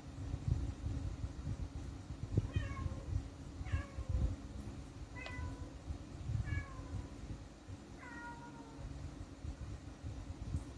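A cat, most likely a kitten, meowing five times in short, high calls that fall in pitch, starting a couple of seconds in. Low, uneven bumping and rumbling sits underneath throughout.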